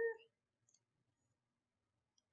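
The end of a drawn-out spoken syllable, then two faint computer mouse clicks in quick succession about two-thirds of a second in; otherwise near silence.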